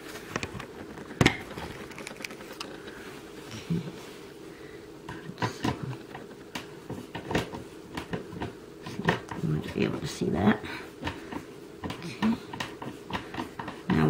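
A hand screwdriver turning a screw into a particleboard bookcase panel: scattered, irregular small clicks and knocks from the tool and the panel being handled, with a sharper knock about a second in.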